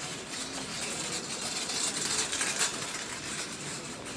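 Ambient noise of a busy pedestrian shopping street, a steady hiss with no clear voices that swells to its loudest a little past the middle.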